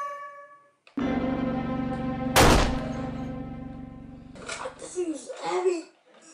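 A single loud gunshot bang about two and a half seconds in, over a sustained music chord that starts suddenly about a second in and fades away. A voice is heard near the end.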